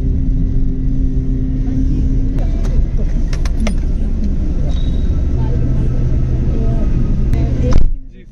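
Car engine heard from inside the cabin, a steady low drone, with a few sharp clicks a little before the middle.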